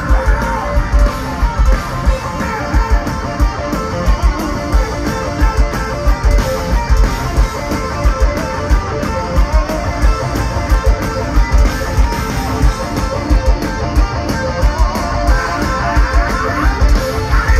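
Power metal band playing live, an instrumental passage led by an electric guitar melody with bends and vibrato over distorted rhythm guitar and a steady pounding drum beat. It is heard loud from among the crowd.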